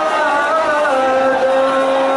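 A voice chanting a mourning lament (nauha), holding long sung notes; the pitch wavers, drops a step about a second in, and is then held steady.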